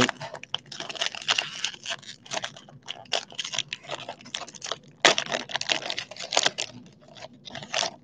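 Plastic wrapper of a trading-card value pack crinkling and tearing as the pack is opened, in a fast run of rustles with a sharp snap about five seconds in.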